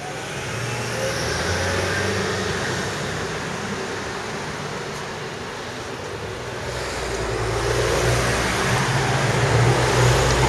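Motor vehicles passing close by on the street: one swells past about a second in, then a louder one with a low engine hum builds from about seven seconds in.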